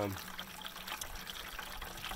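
Rainwater running from a rain barrel's spigot into a plastic watering can, a steady hiss of filling.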